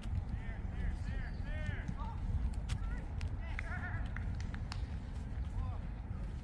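Outdoor park ambience with a steady low rumble of wind on the microphone, a run of short rising-and-falling calls in the first couple of seconds and again near the middle, and a few sharp clicks.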